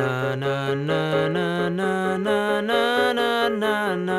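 A man singing a melody line on held vowels, without clear words, his pitch stepping up through several long notes and dropping back down near the end.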